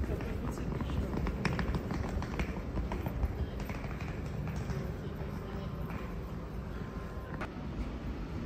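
Railway station platform ambience: a steady low rumble with indistinct voices in the background and scattered sharp clicks and taps throughout.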